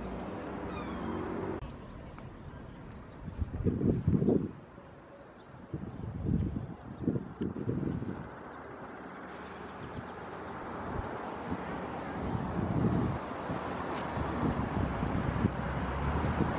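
Wind buffeting the microphone in irregular low gusts, loudest about four seconds in and again a little later, over a steady outdoor hiss.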